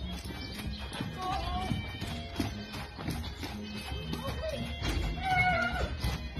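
Background music with a steady bass beat, over which a horse whinnies twice: briefly about a second in, and longer and louder near the end.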